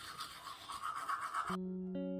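Manual toothbrush scrubbing teeth, an uneven scratchy back-and-forth brushing noise. It cuts off abruptly about a second and a half in, and plucked guitar music begins.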